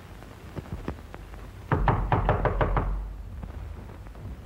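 Rapid knocking on a door: a run of about eight quick, loud knocks lasting just over a second, starting a little before halfway through. A few faint taps come before it.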